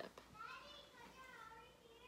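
Faint child's voice in the background, high and wavering in pitch, over quiet room tone.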